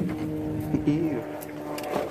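A man's voice holding one long, steady note, with a brief wobble in pitch about a second in.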